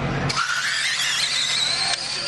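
Electric 1/10-scale RC drag cars launching off the line: a sudden high-pitched whine starts about a third of a second in and climbs steadily in pitch as they accelerate down the track.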